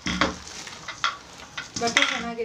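Fabric rustling and brushing as a knit garment is handled and folded, with a few sharp clicks.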